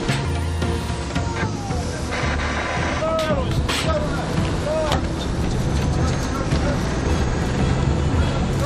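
Fishing boat's engine running with a steady low hum. Several short calls from the crew rise and fall about three to five seconds in, and there are a few sharp knocks on deck.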